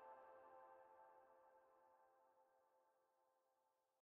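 The faint, fading tail of a held final chord from a mixed choir and piano, its sustained notes dying away steadily to silence by the end.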